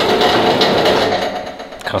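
A small machine running with a rapid, rattling buzz, which stops shortly before the end, followed by a spoken word.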